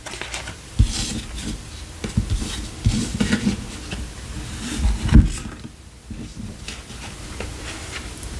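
Tarot cards being handled: cards drawn from the deck, sliding against each other and laid on the table, with a few soft thumps, the loudest about five seconds in.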